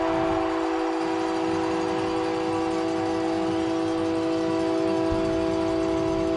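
Hockey arena goal horn sounding one long, steady multi-tone blast over crowd cheering, marking a home-team goal.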